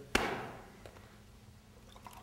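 A single sharp knock just after the start, its ringing dying away over about a second.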